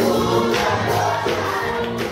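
Gospel choir singing, with hand claps, the level easing slightly toward the end.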